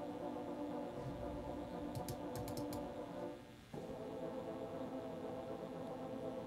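Sampled French horn section (Steinberg Iconica's four-horn patch) playing soft held notes on the repetitions articulation, moving to a new pitch about three and a half seconds in. A few faint clicks sound around two seconds in.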